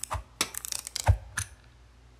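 Four sharp clicks and knocks, the loudest a little past halfway with a dull thud in it, from a metal toggle clamp and a screwdriver being handled on a tabletop.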